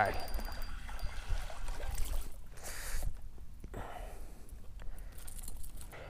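A small striped bass splashing at the surface as it is reeled in, with a louder burst of splashing about halfway through over steady rumble and handling noise.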